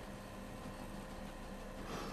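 Quiet room tone: a faint, steady hum and hiss with no distinct events.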